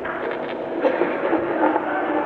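Kirtan music from an old, muffled recording: steady held notes with light percussive taps.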